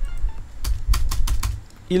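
Computer keyboard clicking in a quick run of about eight keystrokes, starting about half a second in, over a low rumble. It is the sound of code being pasted and new lines being entered.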